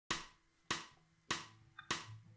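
Four sharp, short clicks at an even tempo, a little under two a second: a count-in click that sets the beat for the song.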